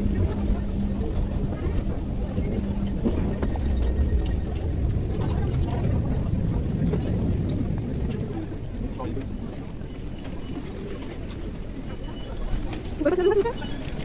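Low rumbling background noise with indistinct voices, while the phone's microphone rubs against clothing. A steady hum runs through the first few seconds, and a brief voice sound comes near the end.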